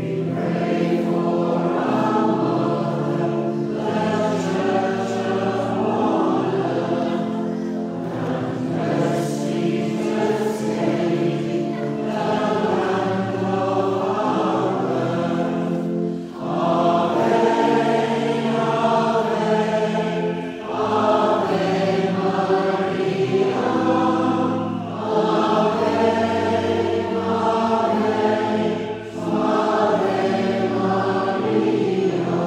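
Many voices singing a hymn in chorus over sustained low notes: the recessional hymn as the clergy process out at the end of Mass. The singing breaks briefly between lines every four or five seconds in the second half.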